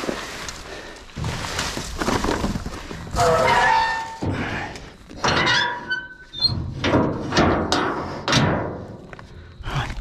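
Plastic sheeting rustling and crackling as it is gathered up by hand, with knocks and scraping from a rusty steel dumpster part being handled and a few brief metallic ringing tones around the middle.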